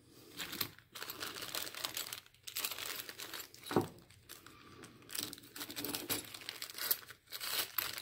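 Clear plastic bag and paper packing wrap crinkling as they are handled and opened by hand, in irregular spurts with short pauses.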